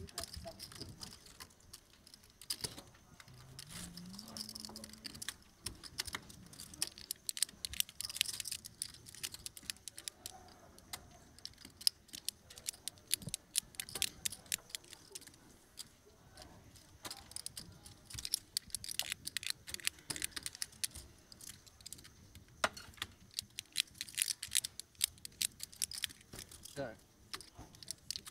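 Clay poker chips clicking against each other as players riffle and fiddle with stacks in their hands, and as chips are pushed into the pot. The clicks are rapid and irregular, coming in busier flurries around the middle and near the end.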